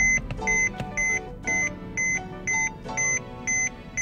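Warning chime from a 2011 Mercedes-Benz C300's instrument cluster, beeping steadily at about two short high beeps a second, over background music.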